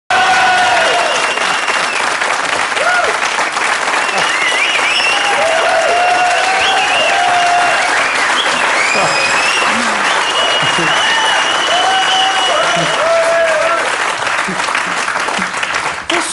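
Studio audience applauding, with voices calling out over the clapping, easing off slightly near the end.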